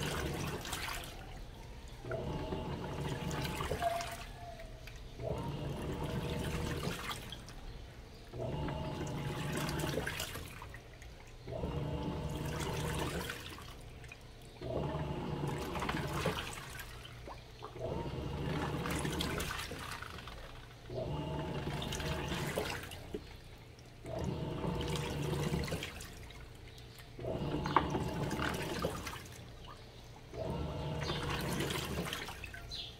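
Electrolux Turbo Economia 6 kg (LTD06) top-loading washing machine agitating a wash load: motor hum and water sloshing come in strokes of about two seconds with short pauses between them, repeating roughly every three seconds.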